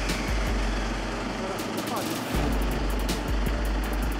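A fire truck's diesel engine running just after being started, with a steady low rumble and a brief dip about two seconds in. This time it has caught properly despite an intermittent starter fault. Background music plays underneath.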